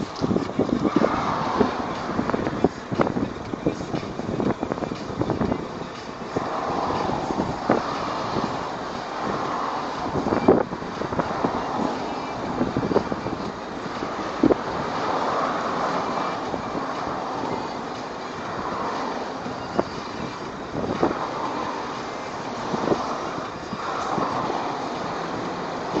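Heavy truck's diesel engine running as the tractor unit slowly pulls a loaded lowboy trailer, the sound swelling every few seconds, with many short irregular clicks and knocks.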